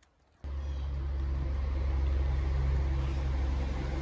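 A steady, low mechanical hum that starts suddenly about half a second in.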